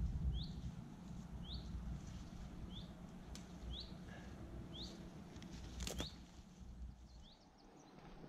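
A small bird repeating a short rising call about once a second, seven times. Two sharp snaps, the second louder, as willowherb stems are cut with a penknife, over low rustling of the plants being handled.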